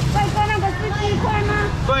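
People talking over a steady low rumble of background noise.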